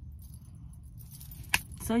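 Metal charms on a silver chain bracelet clinking faintly as the wrist moves, with one sharp click about a second and a half in, over a low steady rumble.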